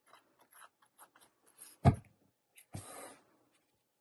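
Paper rustling and rubbing as cut cardstock tag layers are handled and pressed together, with one sharp knock just before two seconds in and a short rub about a second later.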